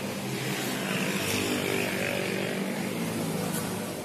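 A motor engine droning steadily, growing louder through the middle and easing off near the end, as if passing by.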